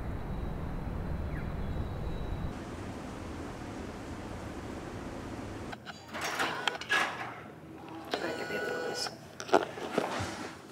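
Low, steady rumble of city street traffic that cuts off about six seconds in. It gives way to quieter room sound with short bursts of voices and a sharp click near the end.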